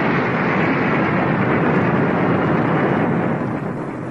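Drama sound effect: a loud, steady rushing rumble like a blast of magic smoke or an explosion, easing off slightly near the end.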